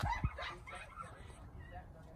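Electronic infant-simulator baby doll making short, faint cooing 'happy noises', with a couple of soft handling bumps at the start.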